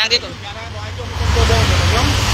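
A motor vehicle passing on the street, engine rumble and tyre noise swelling about a second in and staying loud to the end.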